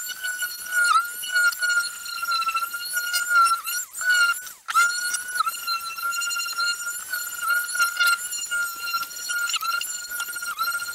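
Corded electric orbital sheet sander running on wood, a steady high motor whine that dips slightly in pitch whenever it is pressed against the work. About four and a half seconds in it briefly falls away, then picks up again.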